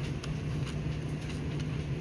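Steady low room hum, with a few faint clicks as a small screw is turned by hand into the plastic back of a FuelTech dash display.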